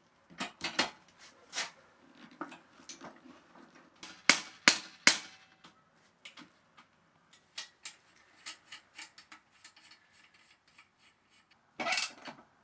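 Metal clinks and clicks from hand tools and parts at a mini chopper's rear wheel, axle and chain as the wheel is fitted. The clicks come irregularly, with three sharp, louder clinks in quick succession about four to five seconds in.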